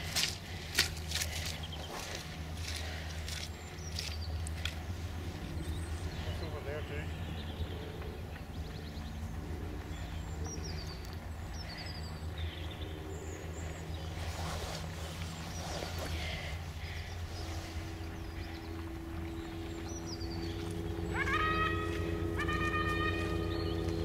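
Foxhounds giving tongue as the pack runs: distant baying, with a long held cry from about two-thirds of the way in and several rising cries near the end, over a steady low rumble.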